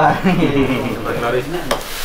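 People talking in a crowded room, with a single sharp click near the end.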